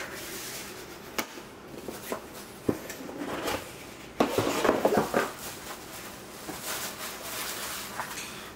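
Handling of a cardboard gift box and its packaging: the lid is put on with a few light knocks, then about a second of louder rustling a little past the middle, and softer handling after.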